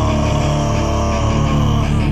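Hardcore band playing live without vocals: distorted electric guitars and bass over a steady low drone, with a held note sliding slowly down in pitch.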